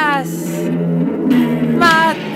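Electric bass guitar holding low sustained notes, under a wordless chanting voice that slides down in pitch at the start and again near the end.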